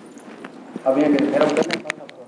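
A voice speaks a few words in the middle, with a few sharp clicks at the start and near the end.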